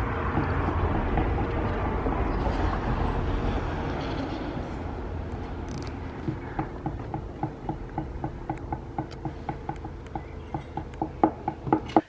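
Low rumble of a passing vehicle, slowly fading. In the second half there is soft, regular ticking about two to three times a second.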